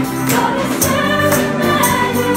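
Live gospel worship music: a group of singers with electric guitar accompaniment, and ribbon tambourines shaken by dancers adding a jingle every half second or so.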